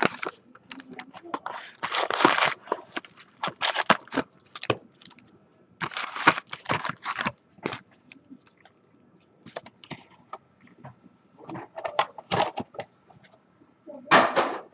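Foil wrappers of trading-card packs crinkling and crackling as the packs are handled and stacked, in short irregular bursts with sharp clicks.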